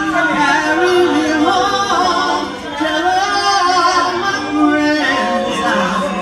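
A mixed group of women's and a man's voices singing a spiritual a cappella, several parts in harmony.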